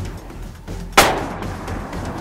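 A single Sako hunting rifle shot about a second in: one sharp crack with a short decaying tail.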